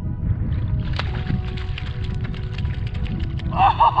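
Water splashing and sloshing in a shallow muddy pool as a cod is wrestled out of a hole by hand, with many short sharp splashes over a steady low rumble. Near the end a man gives a loud, excited yell.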